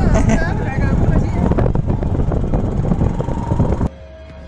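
Loud rumbling noise on a covert audio recording, with a voice briefly at the start. It cuts off suddenly just before the end.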